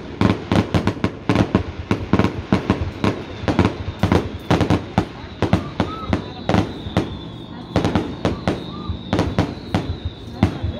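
Aerial fireworks display: a rapid, unbroken barrage of shell bursts, about three or four bangs a second.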